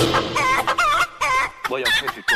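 Chicken clucking: a rapid run of short calls that bend up and down in pitch, with a couple of brief pauses.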